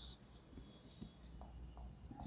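Whiteboard marker on the board: a short scratchy stroke along a set square that ends just after the start, then faint short marker strokes and taps as a number is written.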